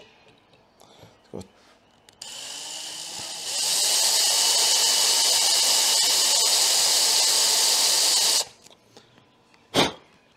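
Cordless drill with a small bit drilling into the aluminium mirror-mount thread of a motorcycle's front brake fluid reservoir. The drill is cutting small holes around a drill bit broken off inside the thread. It starts slowly about two seconds in, runs up to a steady full-speed whine a second later, and stops suddenly; a single sharp knock follows near the end.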